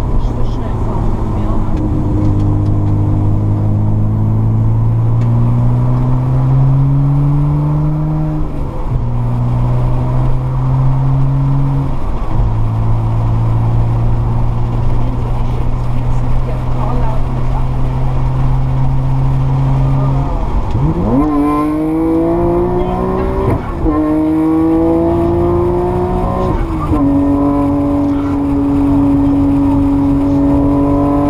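Nissan Skyline R34 GT-R's twin-turbo straight-six heard from inside the cabin, pulling through the gears: the revs hold and climb with short dips at the gear changes, then rise steeply about two-thirds of the way in and stay high to the end. A woman's voice talks over it.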